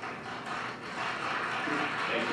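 Audience applause from a keynote webcast played back over room speakers, swelling as a presenter walks onstage.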